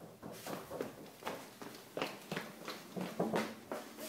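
Quick footsteps across a tiled floor, about four a second.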